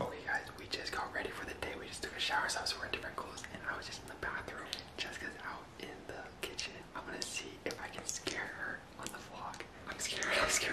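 A man whispering close to the microphone, in short breathy phrases.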